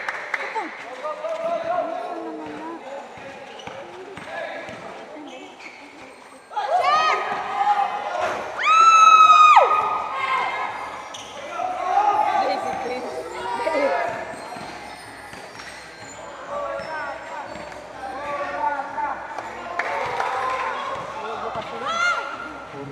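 Players and spectators shouting and calling out during a basketball game, with a basketball bouncing on the court. About seven seconds in the voices jump up into rising shouts, peaking in one long high-pitched yell just after eight seconds.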